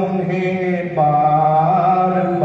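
A man singing a ghazal couplet in long held notes: one note, then about halfway through a step up to a higher note that wavers slightly.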